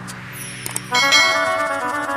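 Electronic keyboard playing an instrumental intro: a quiet held low note, then about a second in a loud sustained chord of several notes comes in and holds.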